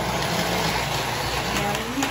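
Vintage Lionel electric toy train running on three-rail metal track: a steady electric-motor hum with the wheels running on the rails.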